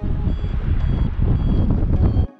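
Loud wind buffeting the camera microphone of a paraglider in flight, cutting in and out abruptly. Faint high beeps sound twice over it.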